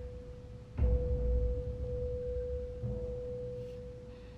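Tense drama underscore: one steady high held tone, with a deep boom about a second in and a softer low swell near three seconds.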